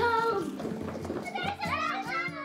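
A child's excited high-pitched voice calling out twice, at the start and again near the end, over soft background music with a steady pulsing beat.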